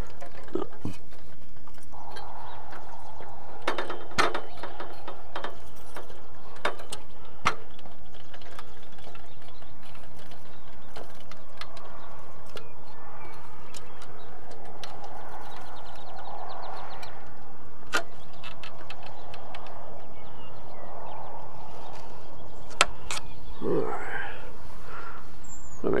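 Scattered metallic clanks and knocks from an aluminium ladder being climbed with a small wind-turbine rotor in hand, over a steady rush of wind on the microphone.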